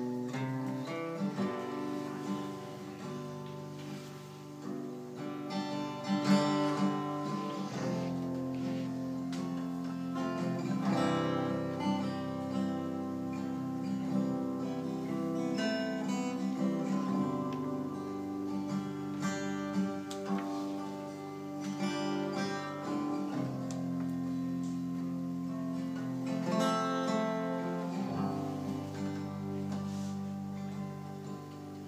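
Acoustic guitar playing an instrumental introduction to a folk song, plucked notes over long held low notes that ring underneath.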